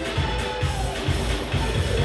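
Dance music with a steady, quick bass beat, about four beats a second, and a melody line above it.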